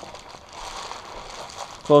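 Reflective foil bubble insulation (Reflectix) crinkling softly with faint irregular crackles as the wing bag's flap is pushed down into it by hand.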